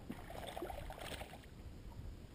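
Small waves lapping and gurgling against the bass boat's hull, an irregular patter of little splashes strongest in the first half, over a steady low wind rumble on the microphone.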